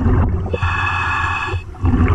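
Underwater low rumble with a diver's breath drawn through a scuba regulator: a steady hissing tone lasting about a second, starting about half a second in.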